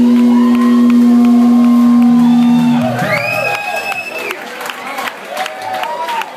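A rock band's final chord is held and rings out loud and steady, then cuts off about three seconds in. The crowd follows with cheering, whoops and a whistle over scattered clapping.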